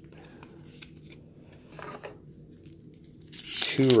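A foil trading-card booster pack wrapper being torn open with a loud crackling rip that starts near the end, after a few seconds of faint card handling.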